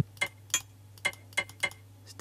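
Short, sharp percussion ticks from an Ultrabeat drum-machine pattern playing back, five hits at roughly three a second, with no kick drum under them.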